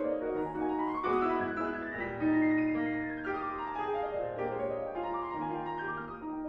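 Grand piano playing a classical passage, with runs of notes climbing and then coming back down.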